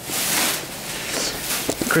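Clear plastic film being pulled off a stack of interlocking foam floor mats: a loud rustle of plastic lasting under a second, then a few softer rustles.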